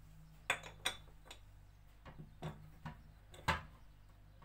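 Small metal spoon clinking and tapping against dishes and containers while spices are measured out: about seven separate light knocks, the loudest near the end.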